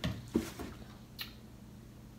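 Plastic product bottles and a cardboard box being handled: a couple of soft knocks in the first half second and a small click about a second in, then quiet room tone.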